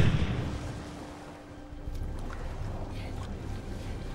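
Ocean waves and wind in a film soundtrack: the fading tail of a loud bang in the first second, then a steady low rumble of open sea that picks up about two seconds in.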